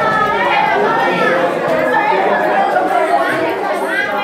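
Many voices talking over one another in a classroom: loud, steady student chatter with overlapping speech and no single voice standing out.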